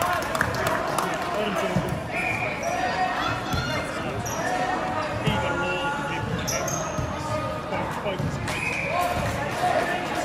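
A volleyball knocking as it bounces on a wooden sports-hall floor, amid players' calls and shouts that echo around the hall.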